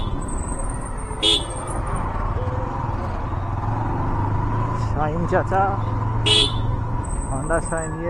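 Motorcycle engine running steadily at low speed, heard from the rider's seat with road noise. Two sharp clicks, about a second in and again near six seconds in.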